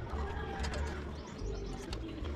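A bird calling in the background over a low steady rumble, with a few light knocks.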